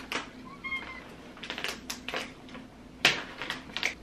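A scatter of light clicks and taps as pet treats are handed out, with a brief high chirp from an animal about three-quarters of a second in and a sharper tap near the three-second mark.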